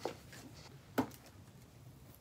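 Hands working at a small cardboard camera box to open it, with faint handling noise and one sharp click about a second in.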